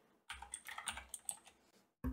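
Faint computer-keyboard typing: a quick run of about half a dozen keystrokes that stops about a second and a half in.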